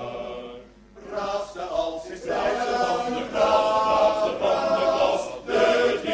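Male choir singing in Dutch: a held chord breaks off, and after a short pause the next phrase starts about a second in and carries on.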